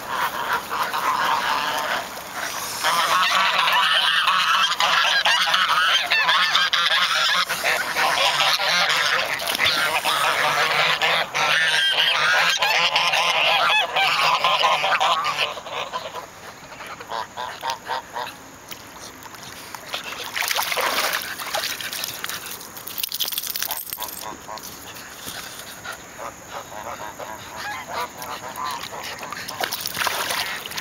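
A flock of domestic geese honking loudly and continuously in a dense chorus, which thins about halfway through to quieter, scattered honks.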